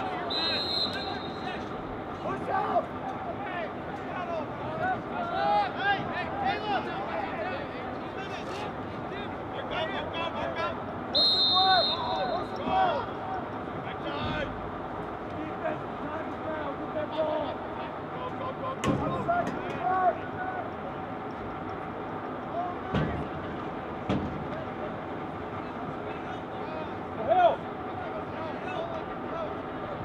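Field sounds of a lacrosse game: players and spectators shouting and calling out throughout, a referee's whistle blown briefly twice (about half a second in and again about eleven seconds in), and a few sharp knocks later on.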